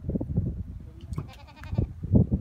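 One pitched animal call, a bleat-like cry lasting under a second, beginning about a second in, over low uneven rumbling.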